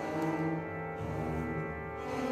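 Orchestra playing sustained, held chords in the low and middle register, with a new, lower note coming in about a second in.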